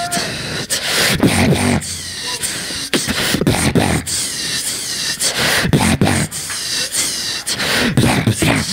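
Two beatboxers performing together into handheld microphones, amplified through a PA. A fast run of mouth-made kick and snare clicks is mixed with wobbling vocal bass and warbling higher tones.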